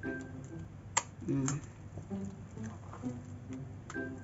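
A spoon stirring a thick rice fritter batter in a stainless steel bowl, with one sharp clink of the spoon on the bowl about a second in.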